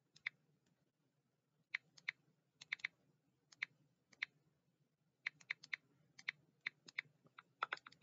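Faint clicks of keys being typed on a computer keyboard, irregular and in short runs with pauses of up to a second or so between them, over a low steady hum.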